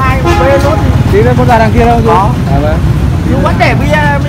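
People talking, with a laugh near the end, over a steady low background rumble.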